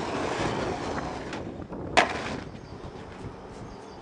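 Skateboard wheels rolling on pavement, a steady rumble that slowly fades, with one sharp board clack about two seconds in.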